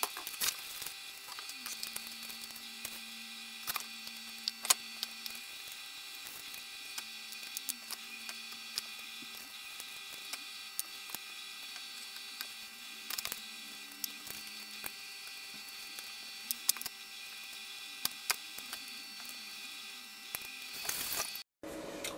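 Quiet, soft wet squishing and scattered small clicks of hands pulling the charred skins off oven-roasted red peppers, over a faint steady hum.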